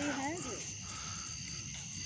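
Insects chirring steadily in the night background, a faint even high-pitched drone, after a brief trailing voice at the very start.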